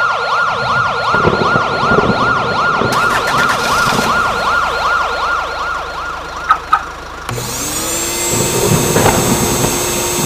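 Siren-like sound effect on a horror title sequence: a warbling tone that wails about four times a second, broken by two sharp clicks about six and a half seconds in. It then gives way to a tone that rises and settles into a steady held drone.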